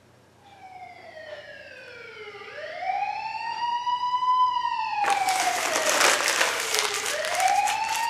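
Emergency vehicle siren wailing, its pitch sweeping slowly down, up and down again and growing louder as it approaches. About five seconds in, a loud crackling noise joins it for a few seconds.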